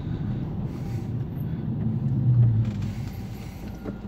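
Car engine and tyre noise heard from inside the cabin while driving slowly: a steady low rumble that swells about halfway through and then eases.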